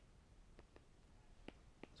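Near silence with a few faint ticks of a stylus tip tapping on a tablet's glass screen while handwriting.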